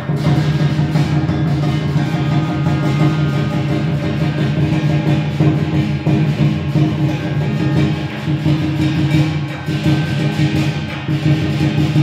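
Lion dance percussion: a large Chinese lion drum beaten in rapid, continuous strokes with hand cymbals clashing, over steady low sustained tones.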